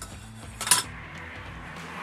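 Metal camping cookware clanking as the frying pan is picked up off the table: one sharp clatter just under a second in, with a short ring after it.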